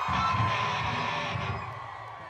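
Live metalcore band's music ringing out: a held, slightly falling guitar note over low bass and drum rumble, fading away near the end into crowd noise.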